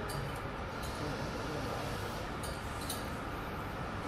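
Steady background din of an indoor food hall, with a few faint clinks of a metal serving spoon against stainless-steel buffet trays.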